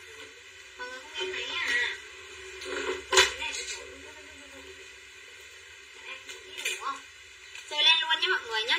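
Intermittent, quieter speech from a woman off-camera in a small room, with a single sharp click about three seconds in.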